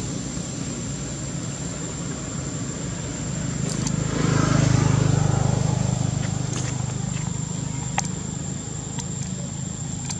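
A motor vehicle engine passing at a distance: a low hum that builds to its loudest about halfway through and then slowly fades, with a few faint clicks near the end.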